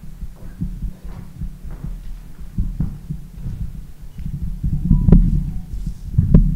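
Dull low thumps and bumps picked up by the PA microphone over a steady low hum, irregular at roughly two a second, the heaviest about five seconds in: handling noise as the next speaker reaches the microphone.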